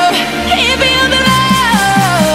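Pop song playing, with a gliding lead melody; a steady beat of about four strokes a second comes in just over a second in.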